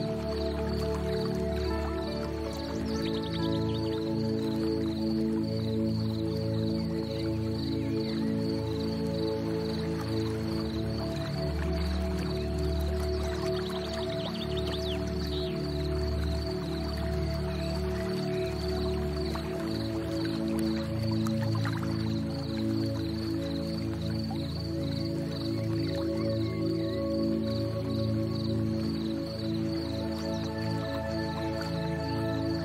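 Calm new-age ambient music of long held tones, with a faint, evenly pulsing high tone above them.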